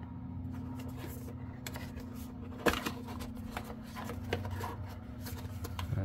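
Small cardboard box being handled and opened: paper rubbing and scraping, small taps and clicks as the inner tray slides out, with one sharp snap about two and a half seconds in as the loudest sound. A steady low hum runs underneath.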